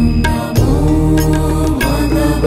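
Devotional music with a chanted mantra, sung over sustained notes and a steady low drone, with a few sharp percussive strokes.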